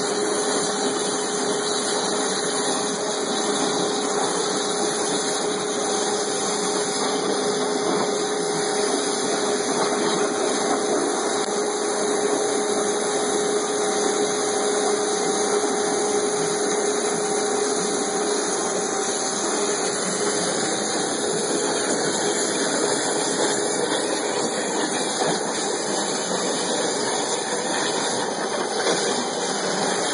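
Waterjet cutting machine running: a steady, loud hiss from the high-pressure jet with a faint steady hum under it, unbroken throughout.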